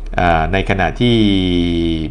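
A man speaking Thai, drawing out one syllable into a steady held tone for about a second halfway through. This is speech only.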